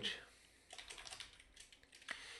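Faint typing on a computer keyboard, a quick run of keystrokes starting just under a second in and running until near the end.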